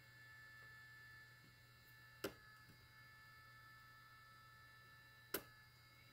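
Two short sharp snaps about three seconds apart, each a spot-weld pulse from a Malectrics Arduino spot welder's handheld probes welding strip onto battery cells, over a faint steady hum.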